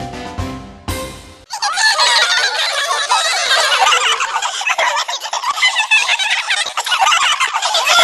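Music that cuts off about a second and a half in, then a chorus of many overlapping high-pitched cartoon laughs, cackling together.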